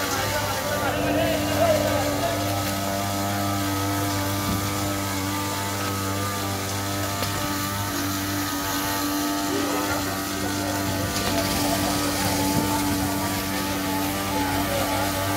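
A small engine running at a steady speed, a constant even drone.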